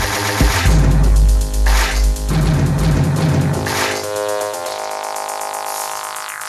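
Live electronic music at 120 bpm from a Web Audio synth and sampler, played from Launchpad grid controllers: pulsing drums over a heavy sub-bass. About four seconds in the bass and drums drop out, leaving held synth tones.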